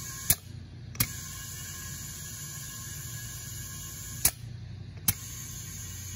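Compressed air flowing through a Matco Tools DT6G digital tire inflator into a low tire being aired up toward 32 psi, a steady hiss over a low hum. Twice the inflator clicks off and back on again under a second later, the hiss dropping out in between.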